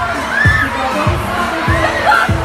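A crowd of children shouting and squealing over music with a steady kick-drum beat, a little under two beats a second.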